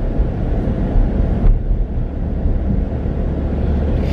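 Inside a moving car's cabin: steady low road and engine rumble while driving.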